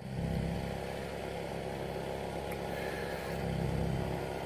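An engine running steadily at an even pitch.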